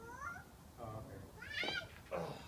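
Three short, high-pitched vocal calls, each rising in pitch and lasting well under a second.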